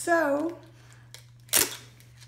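A woman's short wordless vocal sound, then a brief sharp rasp about a second and a half in, over a steady low hum.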